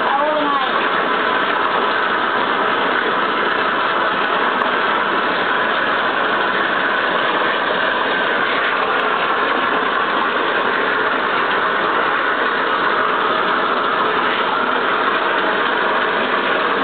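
Water running steadily from a bathtub tap into the tub as long hair is rinsed: an even, unbroken rush.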